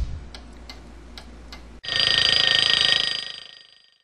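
Intro sound effects: a few faint clock-like ticks, about two a second. Then a sudden loud bell ring with steady high tones, which fades away over about a second and a half.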